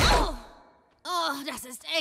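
A loud crash right at the start that dies away within about half a second. After a brief hush, a cartoon girl's voice sighs in pain.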